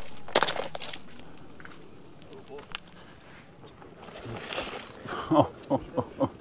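Electric unicycle riding down a dirt trail: scattered knocks and crunches, a brief rush of noise a few seconds in, and short voice sounds near the end.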